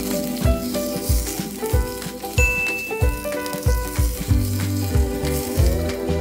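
Boiling oil poured over steamed fish and its ginger, garlic and herbs in a wok, sizzling steadily, under background music with a beat.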